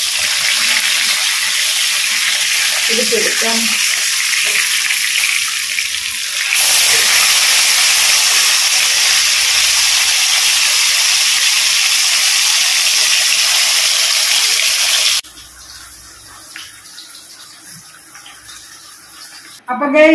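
Fish shallow-frying in hot oil in an iron kadai: a steady, loud sizzle, with oil spooned over the fillet. The sizzle steps up louder about six and a half seconds in, then cuts off abruptly about fifteen seconds in, leaving a faint low hum.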